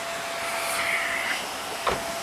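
Steady whir of car-wash vacuum machinery running, with a faint steady hum that fades out past the middle and a single knock just before the end.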